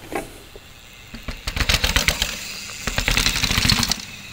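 A bicycle being ridden over rough ground: tyre and frame rattle with rapid clicking, building up from about a second in and staying loud.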